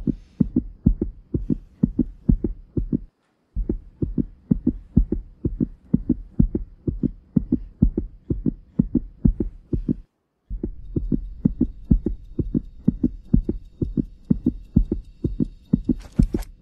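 A fast heartbeat-like thumping pulse from a suspense soundtrack, about three beats a second, that drops out briefly twice. In the last few seconds a faint high ringing tone is laid over it.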